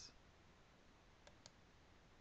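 Near silence: faint room tone, with two faint short clicks close together a little past the middle.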